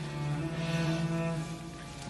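Background score of low bowed strings holding long notes, with a higher note joining about half a second in.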